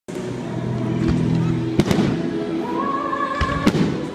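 Aerial fireworks shells bursting, with a few sharp bangs: two close together just before the middle and another near the end, plus a duller thump shortly before it. Music plays steadily underneath.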